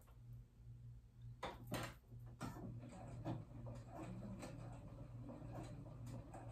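A few light clicks and taps at a computerized sewing machine as the stitch is selected on its touchscreen and the fabric is set under the needle, over a low steady hum.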